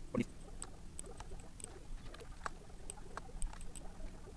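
Irregular clicks of a computer mouse and keyboard, a few a second, with a short low thump just after the start.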